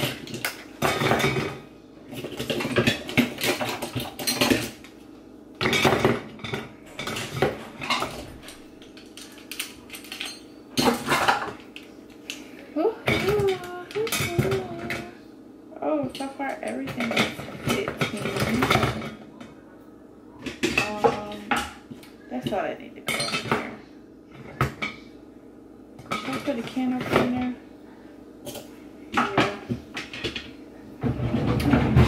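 Metal kitchen utensils and cutlery clinking and clattering against one another and the drawer as they are laid into a kitchen drawer, in many irregular clinks with short pauses between.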